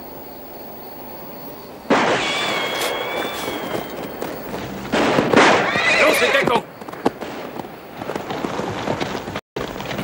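Gunfire breaking out: a sharp shot about two seconds in, followed by a ringing tone, and another loud burst about five seconds in with a horse whinnying, then quieter scattered shots.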